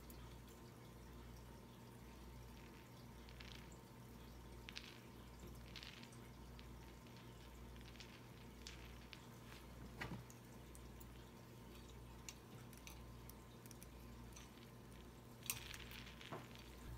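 Near silence over a low steady room hum, broken by a scattering of faint clicks and taps: wire ornament hooks and hanging acrylic gem drops knocking lightly as the crystal is hooked on, the clearest about ten seconds in and near the end.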